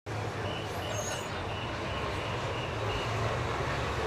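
Steady location background noise: a low hum under an even hiss, with no clear single event.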